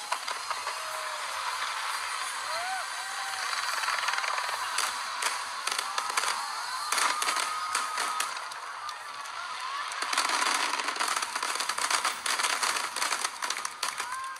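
Fireworks crackling in dense, rapid pops over the voices and cheers of a watching crowd, with a few short whistles. The crackle and crowd noise swell louder about ten seconds in.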